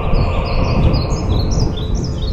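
Small birds chirping in a quick string of short, high notes, laid over a loud, dense low rumble from the soundtrack.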